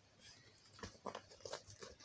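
Faint handling noise of a picture book being opened and held up close to a tablet's microphone: a few small taps and rustles of pages and fingers, mostly in the second half.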